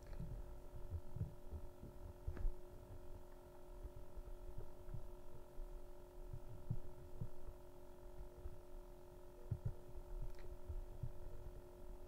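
Steady low electrical hum with several fixed tones, under soft irregular low thumps and two faint clicks, one a couple of seconds in and one near the end.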